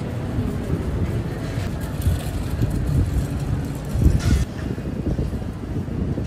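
City street traffic: a continuous low rumble of road vehicles, swelling briefly about four seconds in as something louder passes.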